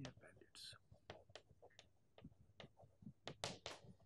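Faint, irregular taps and short scratches of chalk writing on a blackboard.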